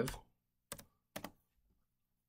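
Two keystrokes on a computer keyboard about half a second apart, short sharp taps as a number is typed in, with a fainter tap after them.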